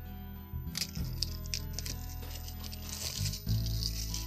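Plastic shrink-wrap crinkling and tearing as it is pulled off a sealed vape mod box, in many short crackles, over steady background music.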